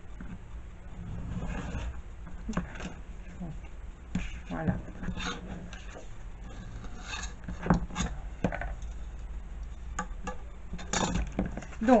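Craft knife drawn along a metal ruler, scraping as it scores through white cardstock, followed by scattered clicks and knocks as the ruler and the cut card are handled on a cutting mat.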